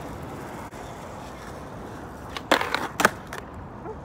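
Skateboard wheels rolling steadily over smooth pavement, then two sharp clacks of the board about two and a half and three seconds in, the loudest sounds.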